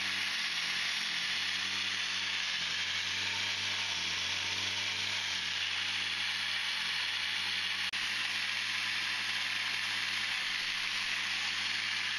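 3D-printed supercharger with a planetary gearbox, belt-driven on a test rig and spinning at high speed under a run-until-failure test: a steady rushing hiss with a faint hum beneath it.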